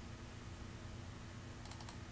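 Faint steady low hum of room tone, with a quick run of a few faint clicks near the end from the computer being worked to zoom the map.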